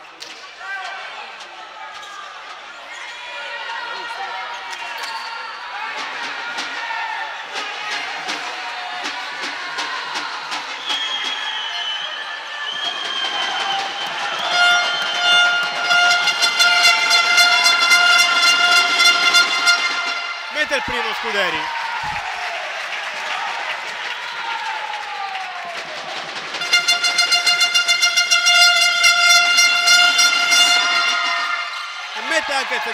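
Gym crowd voices talking and calling out, then a horn sounding loud, steady blasts: one of about five seconds around halfway through, and another starting near the end.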